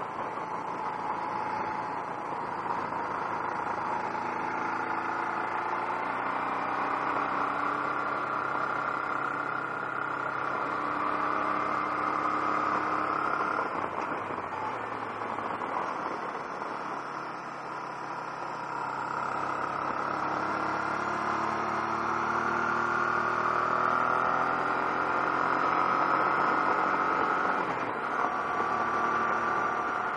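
Honda NT700V's V-twin engine running under way, its note climbing slowly as the bike pulls and dropping back twice, about a third of the way in and again near the end, under steady wind noise on the camera's microphone.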